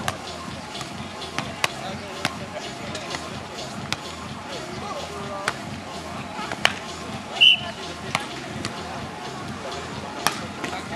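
A volleyball being struck by players' hands and forearms during a beach volleyball rally: sharp smacks at uneven gaps of about a second, with a brief loud high-pitched tone about seven and a half seconds in.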